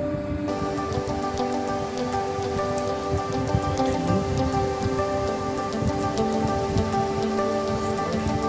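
Slow background music of held, sustained notes over a steady light crackling patter.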